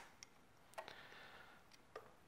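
Near silence broken by a few faint clicks and taps of synthesizer patch cables being handled and pushed into jacks. The loudest click comes right at the start, another just under a second in, and two faint ones near the end.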